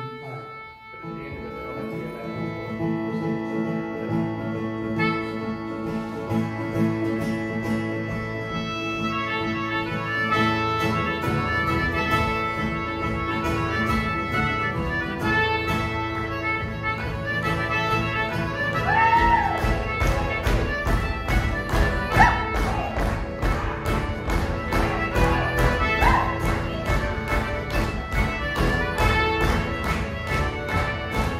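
Folk band playing an instrumental tune on button accordion, concertinas and a plucked string instrument. Held reed chords start about a second in, and a steady beat of quick plucked notes fills in from about ten seconds in.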